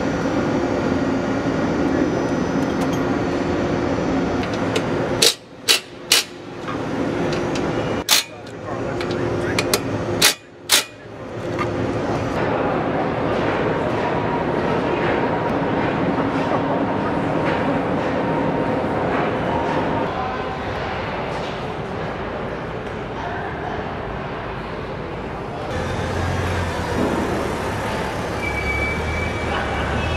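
Factory-floor din of a car assembly plant: a steady mix of machinery hum and background voices. A handful of sharp, loud clicks or bangs come in a cluster from about five to eleven seconds in.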